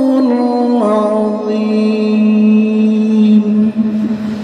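A man reciting the Quran in the melodic qira'at style, chanting into a microphone. His voice steps down in pitch twice within the first second, then holds one long drawn-out note.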